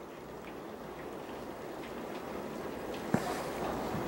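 Steady rain falling, an even hiss, with a single click about three seconds in.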